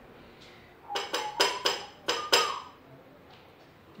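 A white plate struck about seven times in quick succession, each a bright ringing clink. The pitch changes from clink to clink like a short tune played on the plate.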